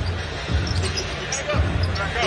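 Basketball being dribbled on a hardwood court: a few dull, low thuds about half a second to a second apart, over the steady noise of an arena crowd.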